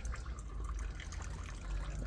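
A thin stream of liquid trickling from a barrel tap into a partly filled bucket, a steady patter of fine splashes.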